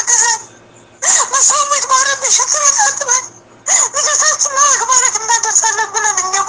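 A high-pitched voice in quick, wavering phrases with a buzzy, hissing edge. It breaks off twice for under a second, near the start and about halfway through.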